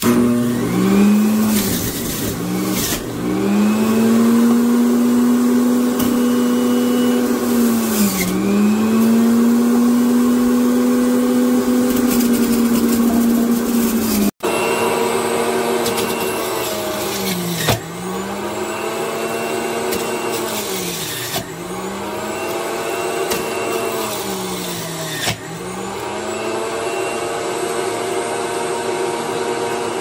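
Magic Bullet Mini Juicer's electric motor running loudly under load, its hum sagging in pitch and recovering every few seconds as produce is pushed down the feed chute. The sound breaks off for an instant about halfway, then the juicer runs on the same way.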